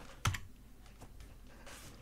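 Computer keyboard keys pressed while the music is stopped: one sharp click about a quarter second in, then a few faint taps.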